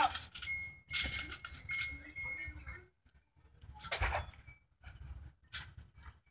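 Trampoline being bounced on: several thumps of landings on the mat, with squeaking springs, the loudest thump about four seconds in.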